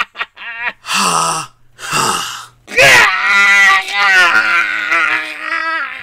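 A man's voice-acted cry of pain: short strained gasps, then about three seconds in a sudden shriek that rises sharply and settles into a long wavering wail. It is a cartoon villain screaming as he is electrocuted.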